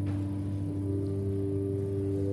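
Slow, sustained organ chords, held notes changing gently, with a new note coming in about a second in.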